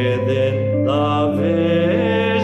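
A hymn sung by voice with sustained instrumental accompaniment, in long held notes that glide from one pitch to the next.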